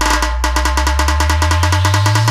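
Dance remix of tabla and Theenmaar band drumming in a build-up: the heavy bass beat is dropped out while a fast, even drum roll plays over a low bass tone that slides steadily upward.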